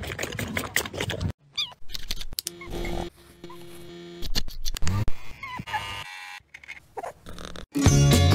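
White tiger sucking on a milk bottle, quick rhythmic sucks several times a second, cut off after about a second. Then comes a mix of short sounds and snippets of music, and loud music starts near the end.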